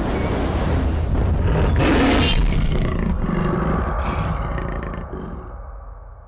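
Cinematic sound effect from a team-reveal video played over loudspeakers: a deep rumble with a big-cat roar, loudest about two seconds in and fading away near the end.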